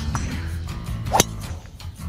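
A golf club striking a ball once, a sharp crack a little over a second in, over background music.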